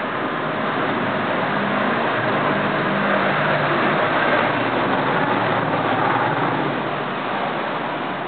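Road traffic noise, a steady rushing sound that swells around the middle and eases off near the end, as of a vehicle passing.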